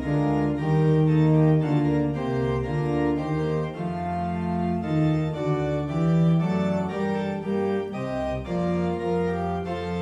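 Organ playing a hymn tune in sustained chords that change step by step with the melody.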